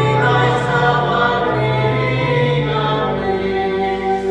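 Many voices singing a hymn together in long held chords over a steady low bass note, the harmony shifting every second or so.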